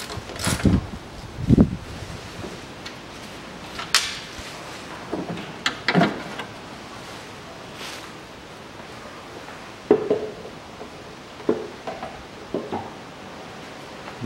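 Scattered knocks, clunks and rustling of parts being handled in a car's engine bay as the coolant expansion tank is unfastened and lifted out; the knocks come at uneven intervals, several in the first two seconds, more around the middle and near the end.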